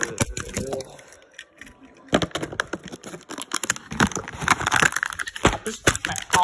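Packaging crackling and tearing, with clicks and knocks from handling, as a die-cast toy car pack is unboxed; the crackle thickens about two seconds in.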